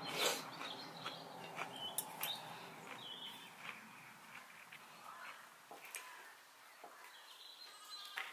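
Faint outdoor ambience with a few short bird chirps, and scattered light clicks.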